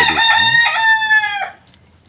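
A rooster crowing once: a held call of about a second and a half that breaks briefly partway through and sags in pitch at the end.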